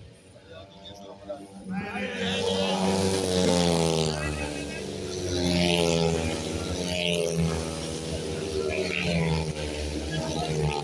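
Longtrack racing motorcycles with single-cylinder engines, racing past at full throttle. The engines come in loud about two seconds in, and their pitch rises and falls as the riders accelerate and slide through the bend.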